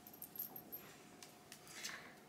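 Quiet room tone with a few faint light clicks and rustles as hands handle a synthetic wig.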